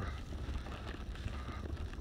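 Wind buffeting a phone's microphone: an uneven low rumble.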